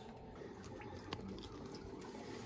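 Faint steady trickle of water draining out of the tankless water heater's service port through a hose into a bucket, now running because the air vent cap is off and lets air in. A light click about a second in.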